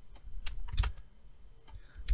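Several scattered, sharp clicks of a computer mouse and keyboard being operated.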